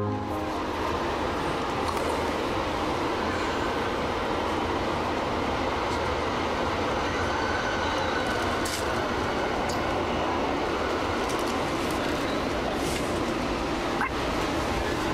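Steady running rumble of a moving train heard from inside the passenger car, with a few sharp clicks along the way.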